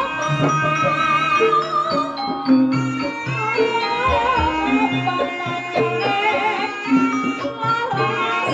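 Javanese gamelan playing ebeg dance music: kendang drums, hanging gongs and metallophones under a singing voice with a wavering melody.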